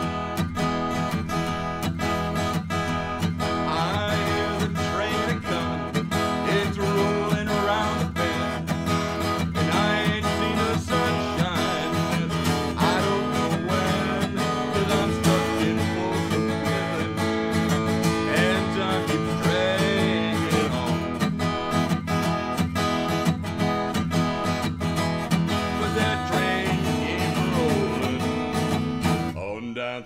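Acoustic guitar strummed in a steady rhythm, with a man singing over it in places.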